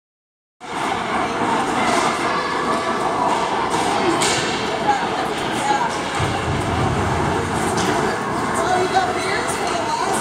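Ice hockey game ambience in an indoor rink: skates scraping, with scattered clacks of sticks and puck on the ice. Indistinct spectator chatter runs underneath.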